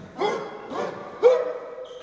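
Futsal players in a huddle shouting a team cheer: three shouts about half a second apart, each rising in pitch, the third the loudest and drawn out.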